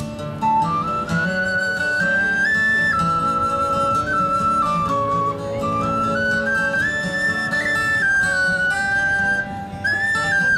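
A flute-type wind instrument playing a slow stepping melody over acoustic guitar accompaniment.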